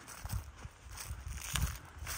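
A hiker's footsteps on dry leaf litter and grass, a few soft footfalls while walking.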